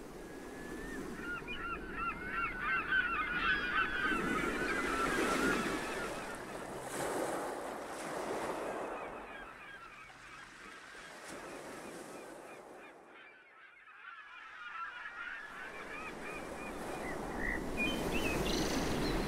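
A flock of birds calling in quick, overlapping bursts over a wash of surf. The calls are thickest in the first few seconds, thin out, and return faintly near the end.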